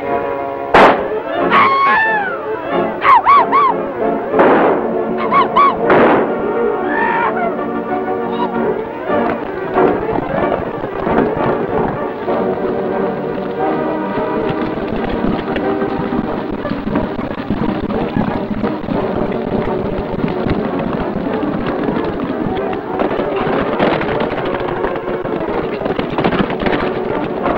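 Several revolver shots, each a sharp crack, with whining ricochets arching in pitch, fired in the first seven seconds or so over dramatic film-score music. The music carries on alone for the rest of the chase.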